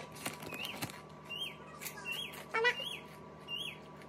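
A small bird chirping over and over, each chirp a short rise and fall in pitch, repeating roughly every half second to second, with scattered sharp crackles and a faint steady hum underneath.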